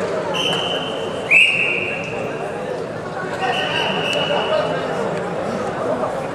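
Wrestling referee's whistle blown in three long blasts, the middle one lower and loudest, stopping the action on the mat so the wrestlers are stood up. Murmur of a crowd in a large hall runs underneath.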